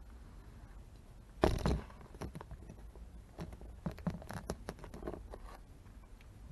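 Close handling noise from a small tripod phone stand being fitted and adjusted: a sharp knock about a second and a half in, then a run of small clicks and scrapes.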